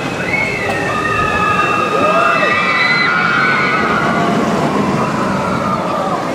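Riders on the Expedition Everest roller coaster screaming: several long, overlapping cries that rise and fall together and hold for a few seconds, over a steady noisy wash of water and crowd.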